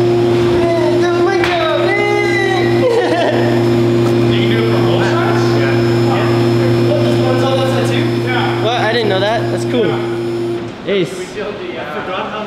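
Rotary two-post car lift's electric hydraulic pump motor running with a steady hum as it raises a car, cutting off suddenly near the end.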